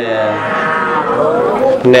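A man's voice chanting one long, drawn-out note whose pitch glides up and down, in the style of a Buddhist monk's chant at the opening of a sermon.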